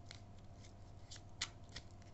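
Faint handling and shuffling of a deck of tarot cards, with a handful of short papery flicks, the sharpest a little past the middle.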